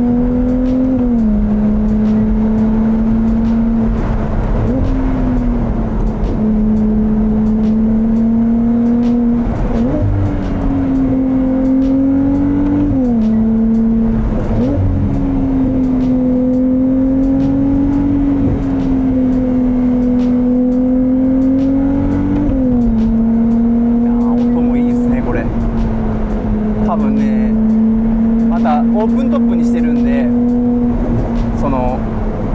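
Ferrari 296 GTS's twin-turbo V6 hybrid engine running under a light, steady throttle while the car drives along, heard from inside the open-top cabin. The engine note holds fairly steady and steps up or down in pitch several times as the gears change, over a constant road and wind noise.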